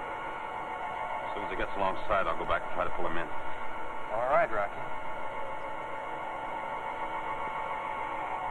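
A steady electronic hum of several held tones, the spaceship cabin sound effect of a 1950s science-fiction serial. Brief bursts of a voice, as if over a radio, cut in about two seconds in and again about four seconds in.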